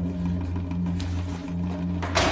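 Low, sustained drone of dramatic background score, two deep held tones with no melody.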